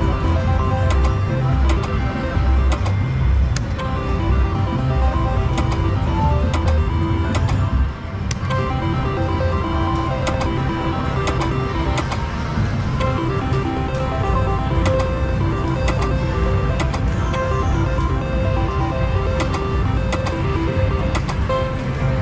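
Electronic slot machine jingles and reel-spin tones, a run of repeating melodic notes, from an IGT three-reel Pinball slot across several spins, over the dense din of a casino floor. There is a brief drop in loudness about eight seconds in.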